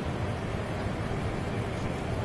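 Steady outdoor rushing noise with a low rumble, unchanging and without distinct events.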